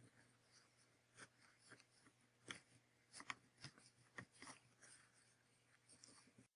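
Near silence with faint, scattered light taps and rustles: hands shifting the bracelet's hard paper units and cord along a metal ruler.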